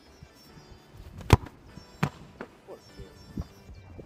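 A football kicked hard off the foot: one sharp thud about a second and a half in, then a second, softer thud under a second later.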